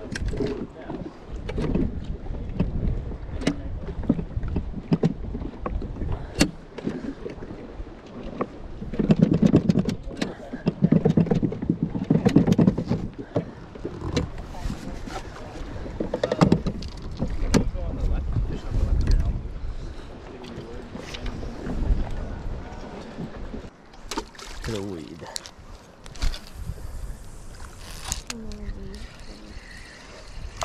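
Choppy lake water lapping against a small fishing boat's hull, with a low rumble of wind on the microphone and scattered sharp knocks and clicks from gear on the boat's deck.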